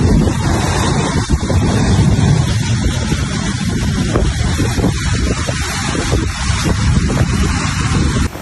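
Loud, steady rush of fast-flowing floodwater pouring through a street, with a heavy low rumble.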